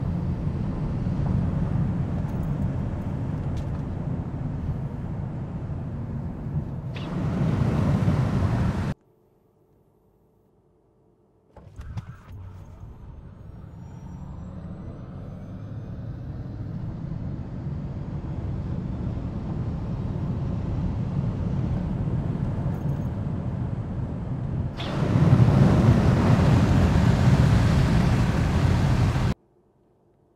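Cabin noise inside a Tesla Model S Plaid on a drag strip run. Tyre and wind noise builds steadily with speed after the launch, under a faint electric motor whine that rises in pitch. The sound cuts off suddenly twice, with a couple of seconds of near silence before the launch.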